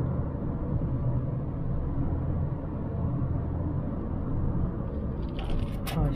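In-cabin drone of a 2010 Kia Optima's four-cylinder engine and tyres cruising at about 80 km/h, a steady low rumble. A few brief clicks sound near the end.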